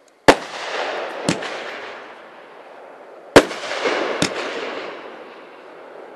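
Aerial shells from a 500-gram consumer fireworks cake bursting: two sharp, loud bangs about three seconds apart. After each comes a crackling hiss from the crackling pistil and a weaker bang about a second later.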